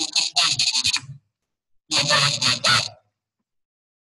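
Unclear voice sounds over a video-call connection, in two choppy bursts that cut off sharply to dead silence, about a second in and again shortly before the end.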